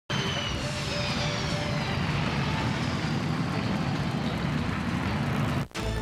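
Jet airliner engines running as the plane comes in to land: a steady loud roar with a high whine that falls in pitch over the first couple of seconds. It cuts off suddenly near the end.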